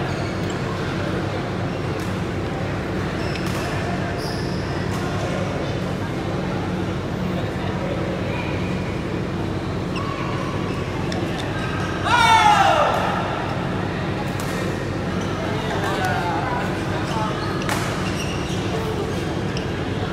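Badminton play in a sports hall: scattered sharp hits over a steady hall hum and background voices. About twelve seconds in comes one loud squeak falling in pitch, a court shoe squeaking on the floor, and a fainter one follows about four seconds later.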